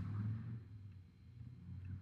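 A pause between spoken phrases: only a faint, steady low hum and room tone.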